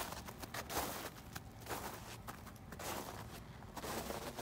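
Soft, irregular footsteps on a thin layer of snow over grass.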